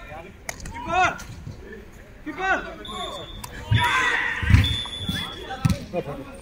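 A football being kicked and bouncing on artificial turf: several dull thumps in the second half, with people's voices calling out before them.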